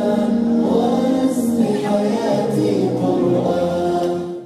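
Vocal music: several voices singing long, held notes that move from pitch to pitch.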